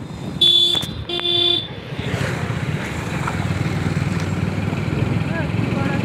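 Two short blasts of a motorcycle horn, each about half a second long, close together and loud. Then the steady low hum of the motorcycle being ridden, with wind on the microphone.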